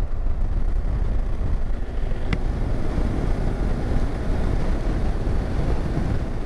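Motorcycle in motion at road speed: steady rush of wind on the microphone over engine and road noise, with one brief sharp click about two seconds in.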